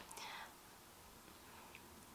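Near silence: room tone, with a faint breathy sound fading out in the first half second.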